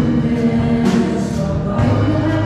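Church choir singing a worship song with instrumental accompaniment, with a crash about a second in.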